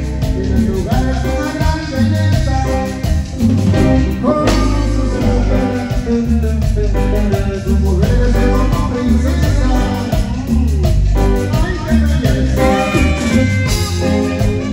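Live tropical dance band playing a steady Latin dance rhythm: saxophones play the melody over electric bass, congas and drum kit.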